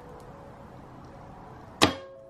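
Wooden-framed wire soap cutter brought down through a loaf of cold process soap, ending in one sharp snap near the end as the wire comes through and the arm strikes the base, with a brief ring after.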